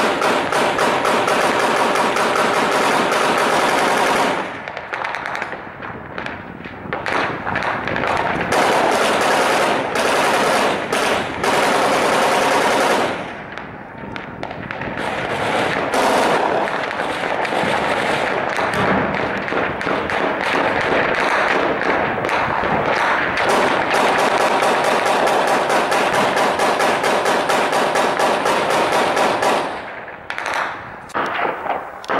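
Sustained automatic gunfire: rapid shots in long bursts. The firing eases off briefly about four seconds in and again around thirteen seconds, then goes on almost without pause until it stops just before the end.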